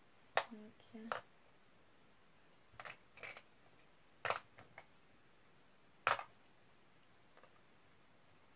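Sharp crackles and clicks of plastic packaging being handled, coming in short scattered bursts a second or two apart.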